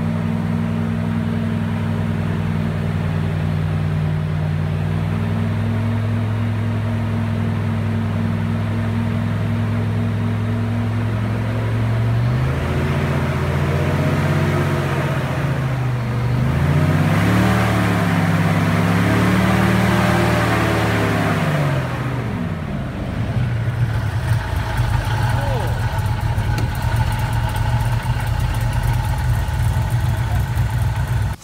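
Airboat engine and propeller running steadily, then revving up and down repeatedly about halfway through as the boat drives up out of the river onto the grassy bank, then settling to a lower, steadier idle near the end.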